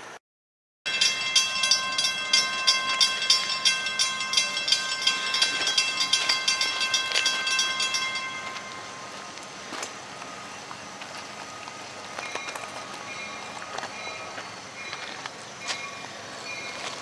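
Railroad grade-crossing bell ringing rapidly, about three strokes a second, then stopping about eight seconds in. After it a fainter background of distant train sound with a few clicks.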